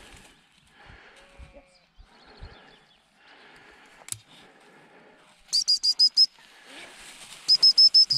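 Gundog whistle blown twice, each time as a quick run of about five short high pips, the rapid-pip signal used to recall a spaniel. The first run comes about halfway in and the second near the end, with faint rustling in rough grass before them.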